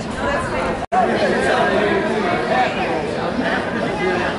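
Indistinct chatter of several people's voices, as of spectators in the stands at a ballpark. The sound cuts out completely for a split second a little under a second in.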